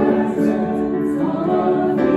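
A small group of singers, women and a man, singing together into microphones with grand piano accompaniment; they hold long notes and move to a new pitch a little past halfway through.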